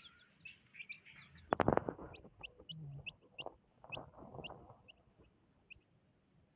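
Young chicks peeping: a run of short, high peeps, two or three a second. There is one loud knock about one and a half seconds in.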